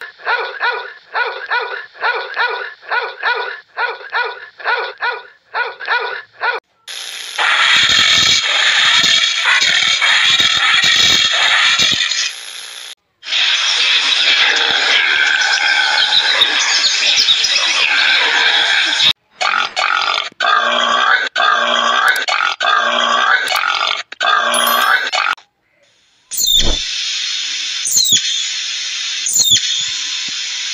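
A string of separate animal sound clips cut one after another. First, for about six seconds, a puppy barks in short high yaps at about two a second. It is followed by longer, denser animal noises and then another run of evenly spaced calls.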